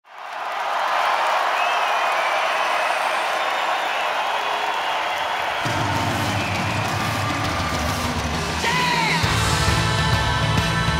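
Arena crowd cheering and whistling. About halfway through, a rock band's bass and drum beat starts under the cheering, and near the end a whoop comes before the full band comes in.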